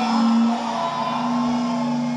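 Live band music with a long sustained low note held under fainter higher tones, with no singing, easing off slightly near the end.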